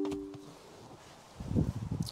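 A short electronic chime from the MG5 EV at the very start: two steady tones sounding together for about half a second. Then it goes quiet, and near the end there are low rustling and soft thumps of someone climbing out of the driver's seat.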